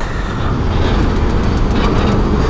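Steady low rumble of engines and road noise from a motorcycle riding slowly alongside a container truck in heavy traffic, with a few faint ticks about a second in.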